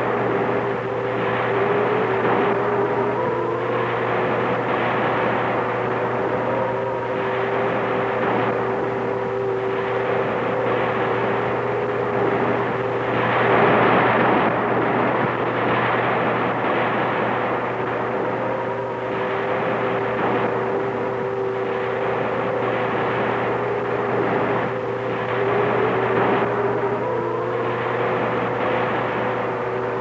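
An eerie electronic drone of sustained, slightly wavering tones over a rushing wash of noise that swells and ebbs, loudest about halfway through.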